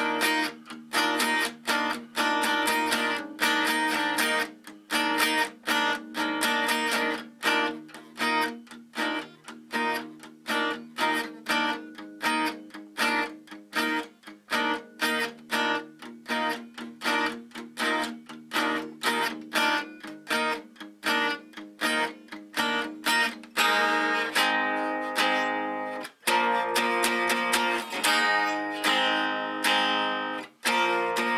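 Steel-string acoustic guitar tuned a half step down, strummed in a steady rhythm of chords. In the last few seconds some chords are left to ring longer between strokes.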